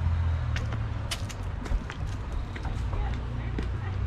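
Footsteps and scattered light clicks as people climb porch steps, over a steady low rumble on the microphone.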